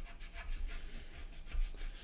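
A damp sponge-tipped stick rubbed back and forth over a filled seam on a plastic model kit in quick, short, faint strokes, wiping the excess filler away.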